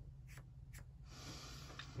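Faint felt-tip marker strokes on sketchbook paper: a few light ticks in the first second, then a soft continuous scratch of the tip dragging across the page.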